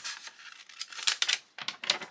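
A folded sheet of printed paper being opened out by hand, crinkling in a quick run of short, sharp crackles.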